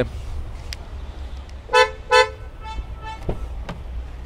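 Hyundai Creta's horn chirping twice in quick succession, about half a second apart, in answer to the remote key fob's lock/unlock button, followed by two fainter, higher beeps. Near the end come two sharp clicks as the driver door is opened.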